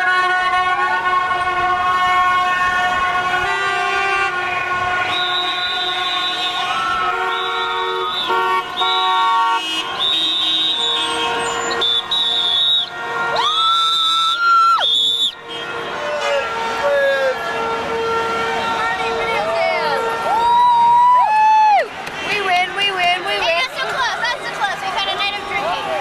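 Many car horns honking at once in celebration, long held blasts overlapping, with one loud horn blast near the middle. In the second half people are yelling and whooping over the traffic.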